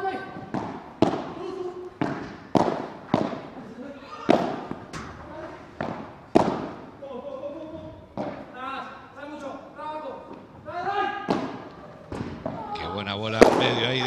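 Padel ball being hit with rackets and bouncing off the court floor and glass walls: a string of sharp, irregular knocks, with voices in between.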